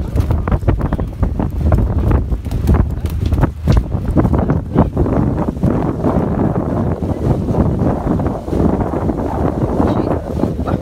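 Wind buffeting a phone's microphone on a moving boat: a loud low rumble broken by frequent gusty thumps.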